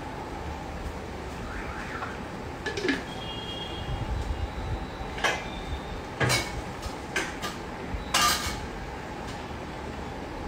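Kitchen clatter: about half a dozen scattered knocks and clinks of cookware and utensils being handled, over a steady background hum.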